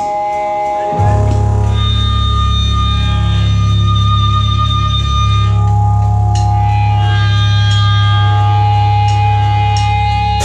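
Electric guitars and bass through amplifiers sounding one long, loud, held low chord that starts about a second in, with steady high tones ringing above it: the opening of a rock song, without drums.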